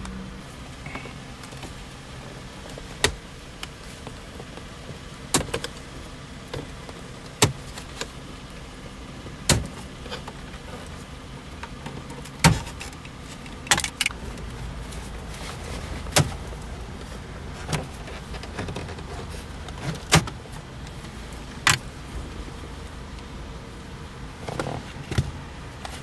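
Lincoln MKZ plastic interior trim being pried loose with a plastic pry tool: a string of sharp clicks and snaps from the retaining clips at irregular intervals, a second or two apart, over steady background noise.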